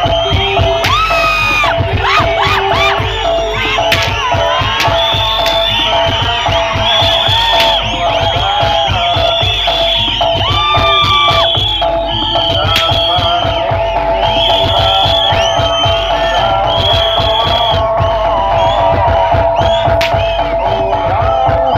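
Loud live music for a bantengan bull-dance performance, with dense drumming and a steady held tone, and a crowd shouting and cheering over it with many short high-pitched calls.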